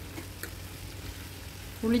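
Garlic cloves, shallots and tomato frying in oil in a pan as a steel ladle stirs them, a soft steady sizzle, with one light click about half a second in.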